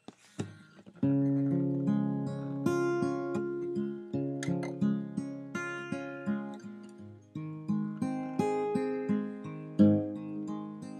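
Acoustic guitar playing an instrumental intro of chords with a steady rhythm of repeated picked notes. The playing starts about a second in, after a few small handling clicks.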